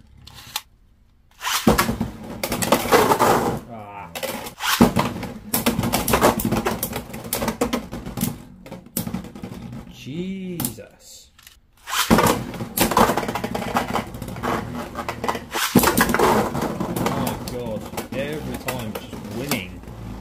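Beyblade X spinning tops clattering in a plastic stadium: a dense run of rapid clicks, scrapes and hard knocks as they strike each other and the walls. It stops briefly about a second in and again near the middle.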